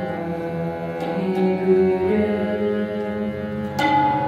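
Harmoniums playing a slow melody of held notes that step from pitch to pitch in Raag Malkauns, with a few sparse tabla strokes, the strongest near the end.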